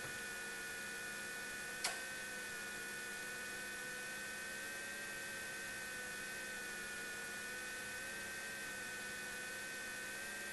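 Steady electrical hum and hiss, with a high whine that wavers slightly in pitch; a single sharp click about two seconds in.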